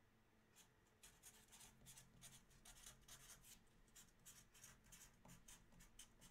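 Faint computer keyboard typing: a run of soft, irregular key clicks, several a second, starting about half a second in.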